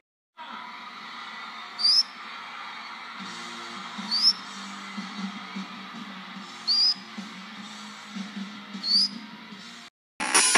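Green-cheeked conure giving four short, high, rising whistled chirps, one every two to three seconds, over a steady background hiss.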